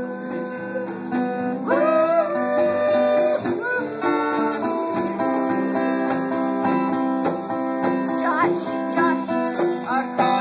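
Acoustic guitar strummed steadily while a man sings, his voice coming in about two seconds in and wavering on a held note near the end.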